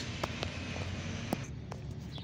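Low steady background hiss with a few faint, sharp clicks; the background drops abruptly about one and a half seconds in.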